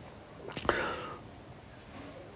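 A person whispering briefly and faintly, about half a second in.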